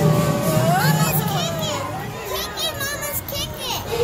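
Children's voices and chatter with music playing in the background.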